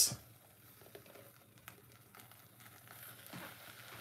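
Faint, soft pouring of a thick blended fruit sauce from a blender jar through a plastic mesh strainer into a saucepan, with a couple of small ticks.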